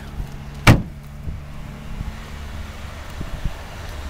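A single hard thud about three-quarters of a second in, the trunk lid of a 2007 Pontiac G6 GT coupe being shut, over a low steady hum.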